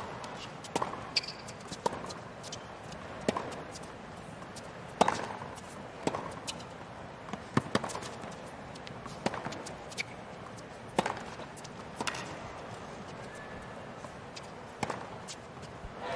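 A long tennis rally: the ball is struck with rackets back and forth, a sharp hit roughly every one and a half seconds, over a hushed stadium crowd.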